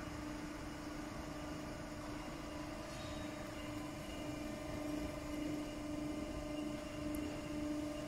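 Industrial bubble washing machine running: a steady motor hum with a constant hiss.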